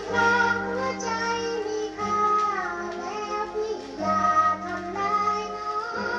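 A woman sings a Thai song with band accompaniment, from an old Cathay record. Her notes are held, and they glide from one pitch to the next.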